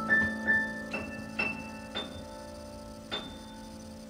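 Solo piano playing a slow, sparse phrase: about six single high notes struck one at a time, climbing in pitch and ringing out over a held low note. The sound grows quieter as the notes decay.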